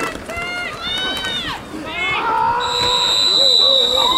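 Players and sideline shouting during an American football play, then, about two and a half seconds in, a referee's whistle blows one long steady blast, signalling the play dead.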